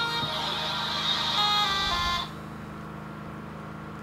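Mobile phone ringtone: a short electronic melody that plays for about two seconds and cuts off suddenly as the call is answered, over a steady low hum.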